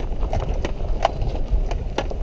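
Chevrolet Traverse crawling down a rough, rocky dirt road: irregular knocking and clicking from the tyres and body jolting over loose rock, over a steady low rumble.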